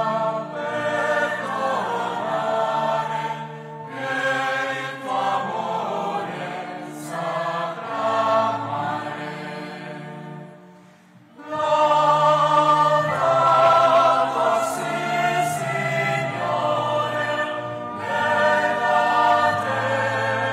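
Choir singing a liturgical chant in long held notes, breaking off briefly about ten seconds in and coming back louder.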